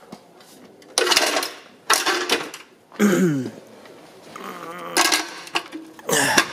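Metal switch contacts and linkage of an X-ray high-voltage unit clinking and rattling as they are handled, in short bursts about a second apart.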